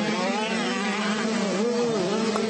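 85cc two-stroke motocross bike engines buzzing as the bikes race, their pitch rising and falling with the throttle.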